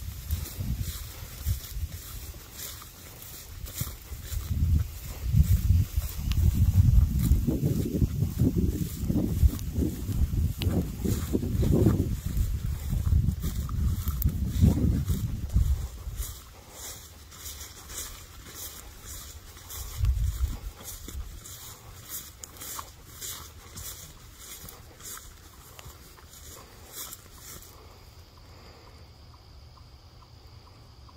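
Footsteps walking through grass, with a loud, uneven low rumble on the microphone for about the first half that then dies away, leaving the steps quieter and more regular.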